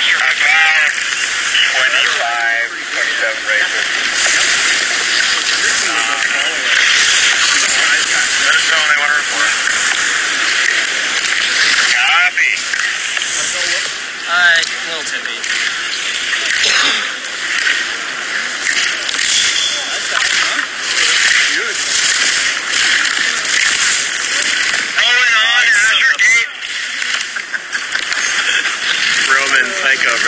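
Slalom skis scraping over hard, rutted snow, a steady loud hiss, with voices calling out a few times.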